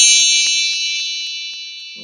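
Bright, high chime of a TV channel's logo sting ringing out and slowly fading away, with a few faint ticks in it.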